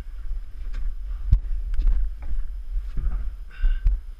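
Wind rumbling on the microphone, with a series of sharp wooden knocks and bumps as heavy framing lumber is shifted against the roof rafters; the loudest knock comes about a second in.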